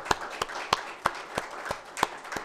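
A man clapping his hands close to a lectern microphone, steady single claps at about three a second.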